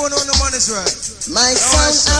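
Reggae sound system clash recording: a deejay chanting rapidly in rhythm over a dancehall rhythm, with heavy bass notes hitting about half a second in and again near the end.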